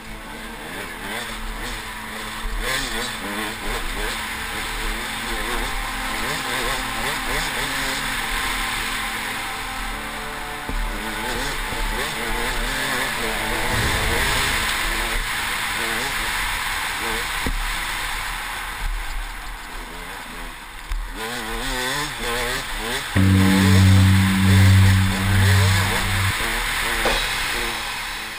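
KTM 200 XC-W two-stroke single-cylinder dirt bike engine revving up and down as it rides a rough dirt trail, heard from a helmet camera with wind and ground noise. From about 23 to 26 seconds in, a loud, low, pulsing tone rises above it.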